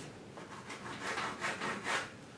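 Sponge paint roller rubbing acrylic paint onto a canvas: a run of short, soft scrubbing strokes, back and forth, starting about half a second in.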